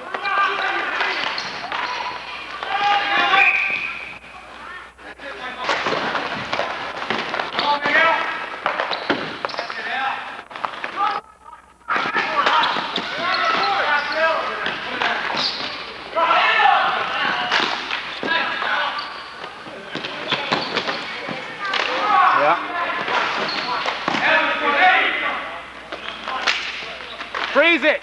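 Indistinct shouting and chatter of hockey players in a large indoor rink, with a ball and sticks clacking and bouncing on the hard floor. The sound cuts out for a moment about eleven seconds in.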